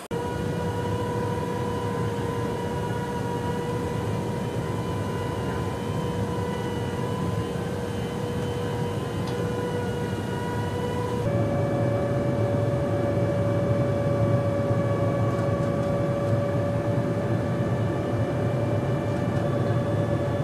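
Jet aircraft in flight during aerial refuelling: a steady low rumble with a constant whine over it. About eleven seconds in, the whine steps to a slightly higher pitch and the sound gets a little louder.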